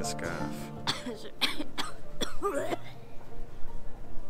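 A young woman coughing several short times in quick succession about a second in, followed by a brief vocal sound, after breathing in her own hair.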